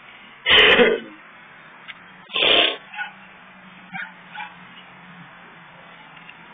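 Two loud short shouts from people close to the phone, about two seconds apart, followed by a few faint sharp smacks.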